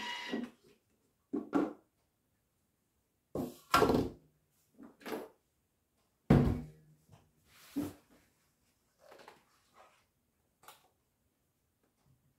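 A series of separate clunks and knocks from a Thermomix's lid and stainless-steel mixing bowl being taken off and handled, with a spatula working the thick dough in the bowl. The loudest thud comes a little after the middle.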